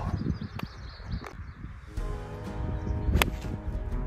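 Background music comes in about halfway through, over a low outdoor rumble. Just after three seconds in there is a single sharp crack of a golf club striking the ball on a tee shot.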